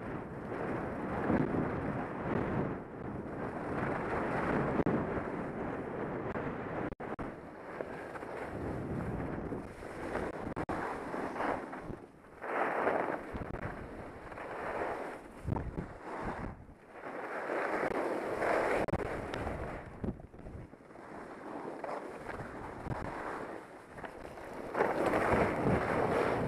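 Wind rushing over the microphone and skis sliding on snow while skiing downhill through telemark turns, the noise swelling and fading every few seconds.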